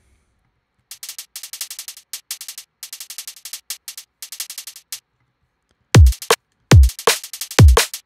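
Sampled hi-hats, sliced from a drum and bass top loop, play alone as a rapid ticking pattern for about four seconds. After a second's gap a full drum and bass beat comes in, with loud deep kicks whose pitch drops quickly, under the hats.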